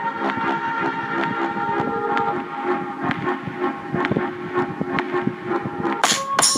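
Background music: held synth chords over a light, steady beat of about two clicks a second, with no vocals.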